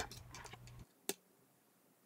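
A single sharp click of plastic K'NEX pieces snapping together, about a second in, against otherwise near silence, with a faint low hum that stops just before the click.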